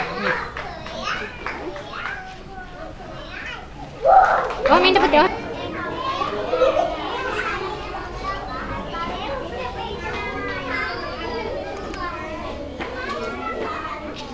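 Many young children chattering and calling out at once, with a louder burst of voices about four seconds in.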